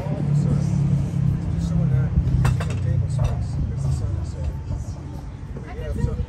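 A low engine hum, steady and then fading away after about four and a half seconds, under faint background chatter, with one sharp click about two and a half seconds in.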